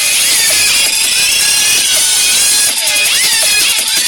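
Loud dance music playing without a break, its melody line gliding up and down, over a slow rising sweep that stops a little before the end.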